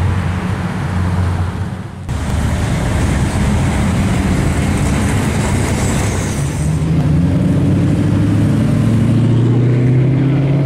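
Lamborghini Diablo V12 engine running as the car drives by, cut off abruptly about two seconds in. Then general street traffic, and from about seven seconds in a Ford GT's V8 engine note rising steadily as it approaches.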